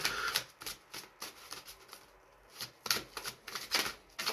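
A deck of Angel Dreams oracle cards being shuffled by hand: a run of quick, light card clicks and flicks. They pause for about a second midway, then start again.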